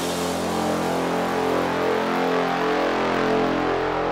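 Drum and bass mix in a breakdown with no drums: a sustained synthesizer chord holds under a wash of noise whose top end slowly fades.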